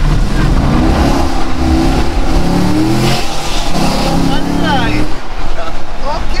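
2010 Corvette's 6.2-litre V8 accelerating hard through the gears, heard inside the cabin: the engine note rises in three pulls, falling back between them at the upshifts, and eases off near the end.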